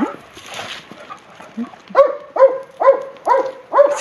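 A dog barking while playing with another dog: a run of five quick barks, about two a second, beginning halfway through after a quieter start.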